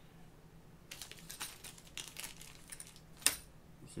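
Hands handling fishing tackle and line on a table: a run of light crinkles and clicks from about a second in, ending with one sharp click near the end.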